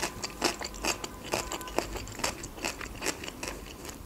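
A person chewing food with the mouth closed: a quick, irregular run of small crunches and clicks.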